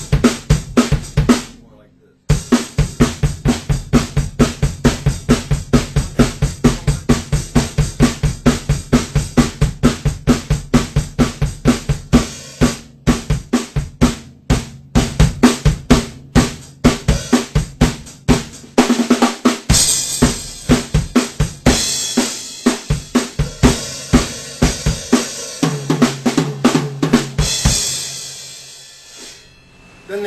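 Rock drum kit played in a double-time beat, with bass drum, snare and hi-hat strokes repeating evenly. There is a brief break near the start, louder cymbal wash joins in about two-thirds of the way through, and the playing dies away just before the end.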